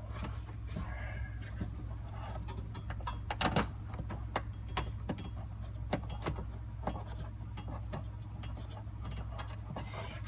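Light clicks and knocks of plastic parts, the battery-cooling HVAC case and trim, being pushed and lined up by hand. They come irregularly, with one louder knock about three and a half seconds in, over a steady low hum.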